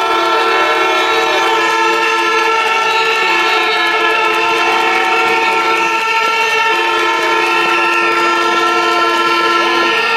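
Many horns blown together by a crowd of demonstrators: a loud chorus of held notes at several pitches, some of them stopping and starting, with a few notes that rise and fall.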